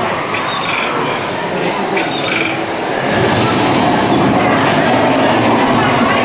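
Steady rushing and rumbling of the ride's boat channel in the dark show building, which grows louder about three seconds in as the boat nears the storm scene, with faint voices in the first half.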